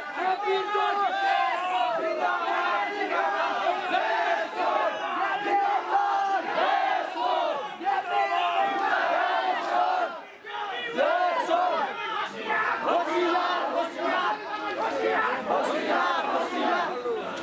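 A crowd of protesters shouting together, many loud voices overlapping, with a brief lull about ten seconds in.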